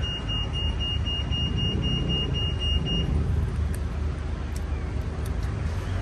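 Steady traffic noise from a busy road. A continuous high-pitched electronic tone runs over it and cuts off about halfway through.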